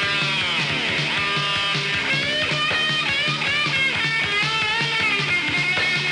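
Rock music: a lead guitar line of bending, gliding notes over a steady, evenly pulsing bass beat.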